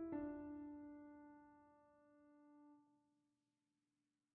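Background piano music: a chord struck at the start rings on and fades away slowly, leaving silence for the last second or so.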